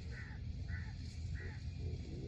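A bird gives three short calls, evenly spaced about half a second apart, over a steady low rumble.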